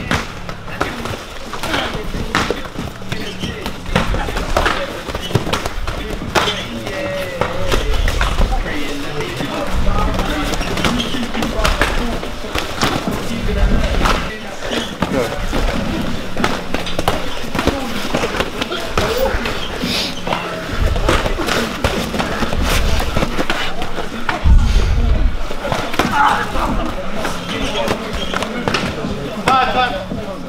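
MMA sparring: gloved punches and kicks landing as repeated slaps and thuds, with shuffling on the mats, amid indistinct voices and music. A heavy thud stands out about two thirds of the way in.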